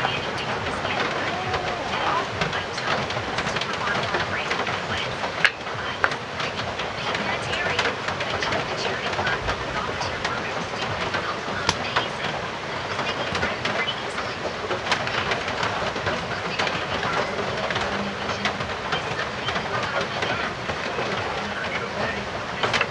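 Steady hiss of heavy rain, with a few sharp clicks and taps scattered through it, the sharpest about five and a half seconds in.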